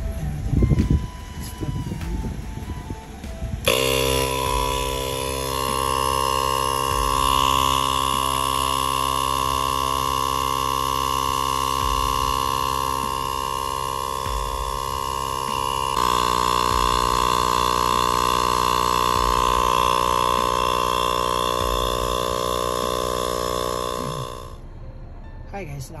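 Portable electric air compressor running steadily while it inflates a flat car tyre. It spins up about four seconds in, its tone shifts abruptly partway through, and it stops shortly before the end.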